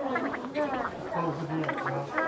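A smartphone screen reader speaking in a synthetic voice at very high speed as the phone is swiped and tapped. The speech comes out as rapid, garbled-sounding chatter.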